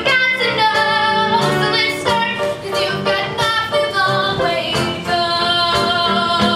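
A young girl singing a Broadway show tune into a handheld microphone, amplified over recorded backing music.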